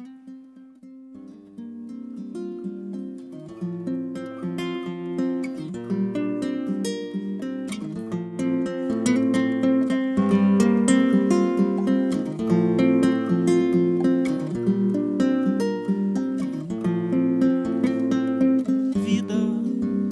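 Solo nylon-string classical guitar played fingerstyle. A plucked introduction starts softly and grows fuller over the first few seconds.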